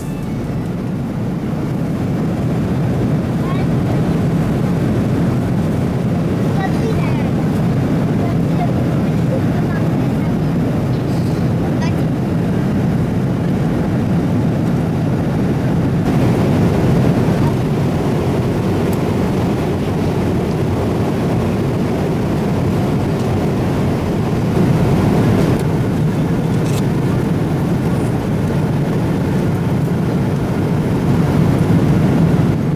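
Steady cabin noise of a Boeing 777-300 airliner in cruise: a constant low rushing drone of engines and airflow.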